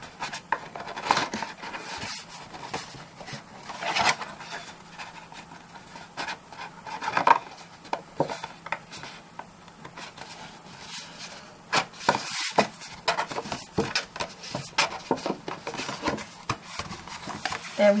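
Cardstock box lid being worked down over a tight-fitting base by hand: card scraping and rubbing against card in irregular bursts, with scattered taps and knocks from handling.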